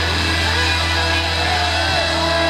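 Live blues-rock band: an electric guitar playing bending, sustained notes over a long held low bass note, with little drumming.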